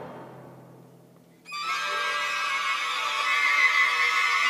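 Symphony orchestra in a contemporary piece. A loud passage dies away, leaving a faint low held note. About a second and a half in, a dense cluster of high sustained notes enters suddenly and holds.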